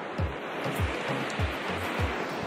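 Background music with a steady low beat, about three thumps a second, over a steady rush of noise from the river far below.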